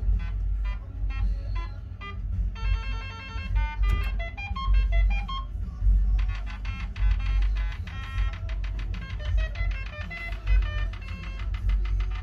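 Merkur Super Herz As slot machine playing electronic beep melodies, in short phrases at first and then, from about six seconds in, a fast unbroken run of beeps as its points display counts up a win. A low rumble runs underneath.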